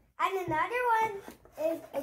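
A child speaking in a high voice: a short phrase, then a brief word near the end.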